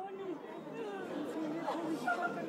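Low chatter of several people's voices talking at once in a crowded room.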